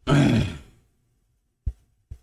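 A man's short, loud vocal exhale with some voice in it. It fades out within about a second and is followed near the end by a faint click.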